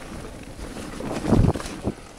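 Wind buffeting the microphone and an electric mountain bike's tyres rolling over leaf-covered dirt trail, with a loud cluster of low rattling thuds about a second in and another knock near the end as the bike runs over rough ground.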